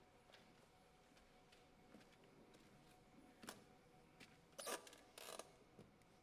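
Near silence in a hall, broken by a few faint clicks and then two short scraping rustles a little past the middle: stage handling noises as a microphone is set and the pianist takes his seat at the piano.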